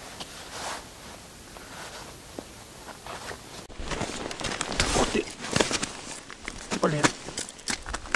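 Footsteps crunching on packed snow and ice, with clothing rustling, as an angler walks up to his ice holes: irregular crunches over the second half. Before that, only a faint steady outdoor hiss.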